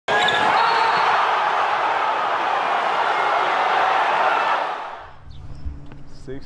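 Basketballs bouncing amid a busy gym's din of voices, loud and steady, fading out about five seconds in.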